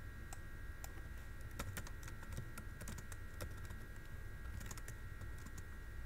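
Computer keyboard typing: scattered, irregular key clicks, faint, as an equation is edited.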